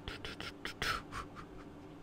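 Close-up mouth sounds: a quick run of small lip smacks and mouth clicks during the first second or so, then they stop.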